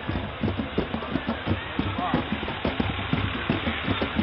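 An emergency vehicle (ambulance) driving past close by, its engine running, over a dense background of crowd voices and street noise.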